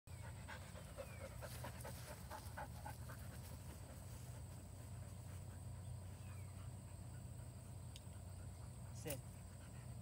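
A dog panting faintly in quick, rhythmic breaths, most plainly in the first few seconds, over a steady low rumble.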